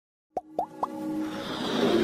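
Animated intro jingle: three quick rising 'bloop' sound effects about a quarter second apart, then a swelling musical build-up.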